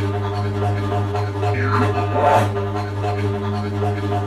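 Background film-score music: a steady low drone with one falling sweep about halfway through.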